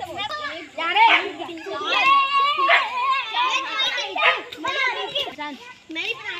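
A group of children's high voices calling and shouting over one another as they play a group game, with one long held call about two seconds in.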